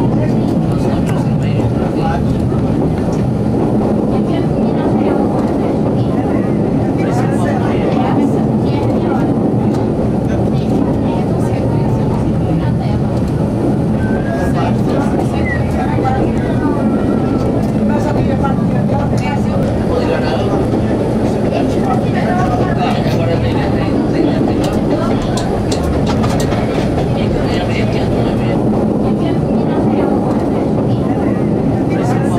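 Diesel railcar running along metre-gauge track, heard from the front cab: a steady engine drone under the rumble of the wheels on the rails, with a few faint clicks from the track.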